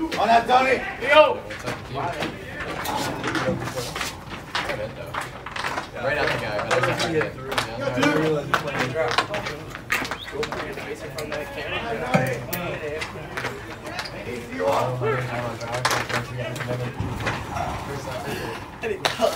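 Several people's voices talking and calling over one another, indistinct, with scattered sharp clicks.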